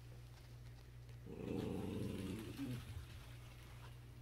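A small dog growling low and rough at a Sphero Mini robot ball, starting about a second in and lasting about a second and a half.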